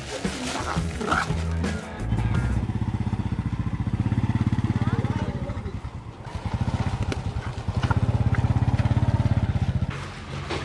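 Background music, then from about two seconds in a motorcycle engine running with a fast, even putter. It fades briefly around the middle and picks up again.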